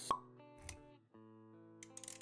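Logo-intro jingle: a sharp pop right at the start, then held musical chords over a steady bass. The music cuts out briefly about a second in before the chords come back, with a few clicks near the end.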